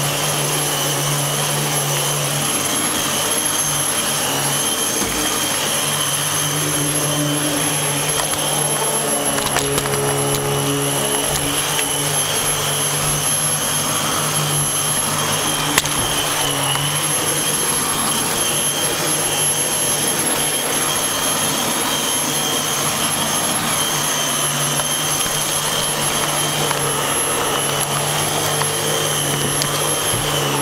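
Dyson DC15 upright vacuum cleaner running steadily: a constant high-pitched motor whine over a rush of air, with a lower hum that drops away and comes back a few times.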